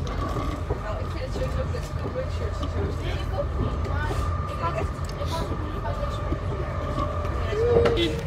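Steady low rumble inside a moving sprinter commuter train, with a steady high tone running through it and faint murmur of other passengers' voices.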